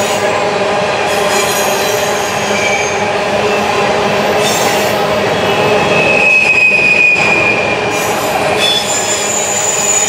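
Freight train of covered hopper cars rolling past on a curve, steel wheels squealing against the rail over a steady rumble and clatter. The squeal shifts pitch, with a strong steady squeal about six seconds in and a higher one near the end.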